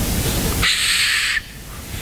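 Steady hiss of background noise, with no voice. Just under a second in, a brief, brighter hiss sounds for under a second, and then the noise falls quieter.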